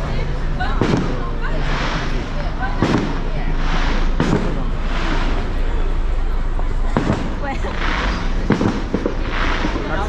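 Fireworks going off: several sharp booming bursts, some followed by a spreading crackle, with crowd voices underneath.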